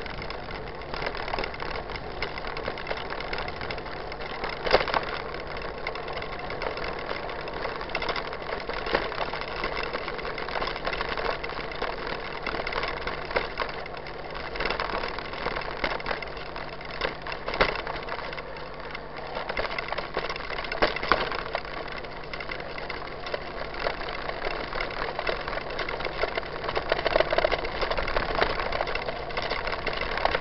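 Mountain bike riding on a dirt road, heard from a camera mounted on the bike: a steady rumble and rattle from the tyres and frame, with a few sharper knocks from bumps.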